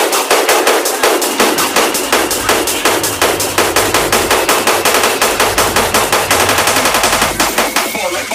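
Hard techno build-up: the bass is cut out and a rapid electronic drum roll of sharp hits speeds up. A low rumble comes in a couple of seconds in.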